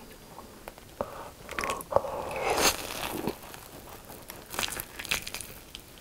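Close-miked biting and chewing of a sugar-coated, deep-fried Korean hot dog covered in spicy sauce. The fried coating crunches, loudest about two to three seconds in, with wet mouth clicks around it.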